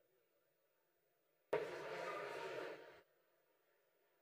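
Near silence, broken about a second and a half in by a sudden rush of noise close to a microphone that lasts about a second and a half and fades out.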